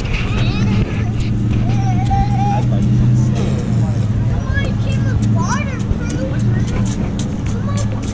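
A steady low machine hum, with children's voices and calls over it. The hum drops out near the end.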